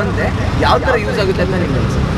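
A man speaking over a low, steady rumble of road traffic.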